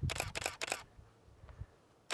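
Canon DSLR shutter firing in a rapid burst, about five clicks in under a second.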